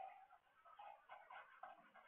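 Near silence: faint room tone with weak, irregular background sounds.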